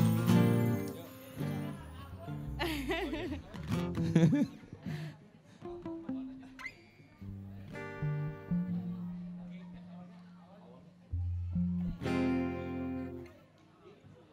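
Acoustic guitar and keyboard playing scattered chords and single notes in stops and starts, not a full song, while the players try out the key of the song.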